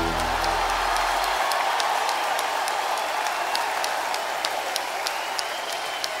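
Audience applause, a dense steady patter of many hands clapping, as the song's final chord dies away over about the first second.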